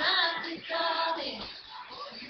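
A young girl singing solo, holding sung notes that fade down in the second half, recorded through a webcam microphone.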